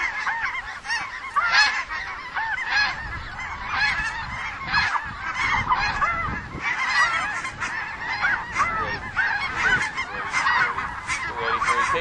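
A large flock of snow geese calling as it circles overhead: many high, yelping honks overlapping in a steady, dense chorus.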